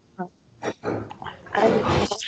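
A person's rough, breathy throat sounds without words. They are short and faint at first and grow longer and louder near the end.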